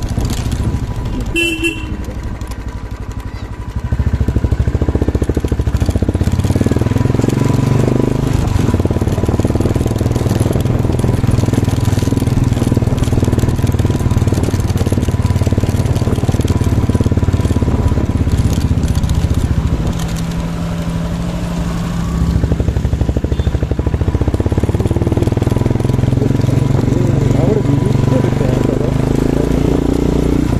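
Motorcycle engine running steadily while the bike is ridden, getting louder as it pulls away about four seconds in, easing off briefly around twenty seconds, then picking up again. A short horn toot about a second and a half in.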